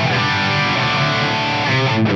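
Electric guitar through an Axe-Fx III's Mesa Mark IV amp model with the Plex Delay's Detuned Space reverb: sustained notes wrapped in a wash of detuned reverb, with falling pitch glides near the start. The reverb is meant to mimic an old Roland or Yamaha rack-mount reverb, not super accurate but with character.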